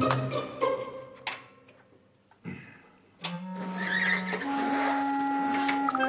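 Background music: the sound fades to a brief lull, then about three seconds in, held synth-like notes come in, one low note followed by higher sustained notes.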